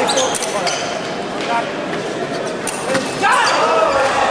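Fencing hall between touches: scattered sharp knocks and footfalls on the piste, with voices in a large reverberant hall. A louder voice calls out about three seconds in.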